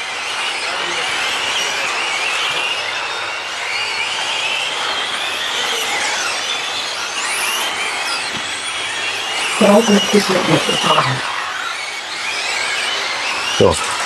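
A pack of 1/8-scale electric on-road GT RC cars racing, their electric motors and drivetrains making high-pitched whines that overlap and rise and fall in pitch as the cars accelerate and brake through the corners.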